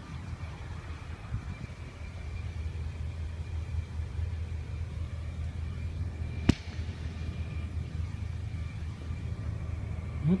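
Steady low rumble of road traffic, with a single sharp click about six and a half seconds in.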